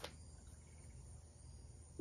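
Near silence: faint insects, likely crickets, chirping in the background over a low steady hum.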